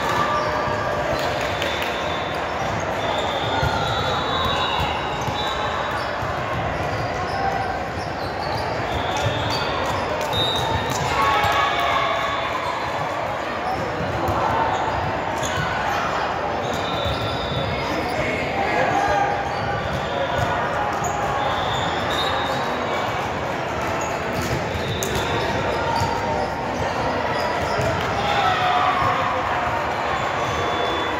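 Busy volleyball gym: overlapping voices of players and spectators, volleyballs being struck and bouncing on the hardwood floor, and frequent short high squeaks of sneakers, all echoing in a large hall.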